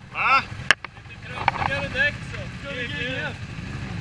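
Motorcycle engine running steadily at idle, with raised voices calling out over it in short phrases.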